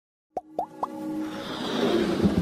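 Animated logo intro sound effects: three quick plops about a quarter second apart, each gliding upward and pitched a little higher than the last, followed by a swelling sound that builds into the intro music.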